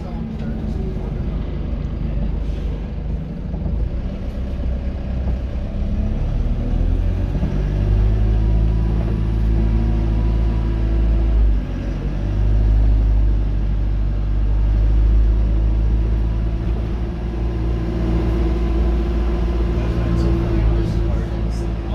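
Dennis Dart SLF single-deck bus engine heard from inside the rear of the saloon, running under way. It grows louder and steadier about eight seconds in, dips briefly near twelve seconds, then holds a steady drone.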